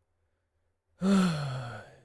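A man lets out a tired sigh about halfway in, after a second of near silence; the sigh is about a second long and falls in pitch.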